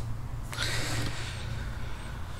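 A breath, a soft hissing exhale close to the microphone lasting about a second, over a steady low hum.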